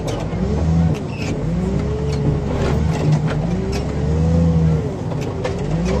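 Car crusher's engine-driven hydraulic power unit running steadily, with a whining tone above the engine that slowly rises and falls.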